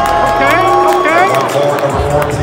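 Arena public-address announcer calling a player's name in one long drawn-out call during starting-lineup introductions, over intro music and a cheering crowd.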